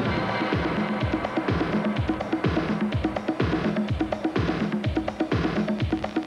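Electronic music with a steady thumping beat.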